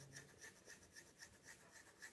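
Pilot Falcon fountain pen's soft extra-fine 14K gold nib scratching faintly on paper as it writes a row of looped strokes, about five strokes a second.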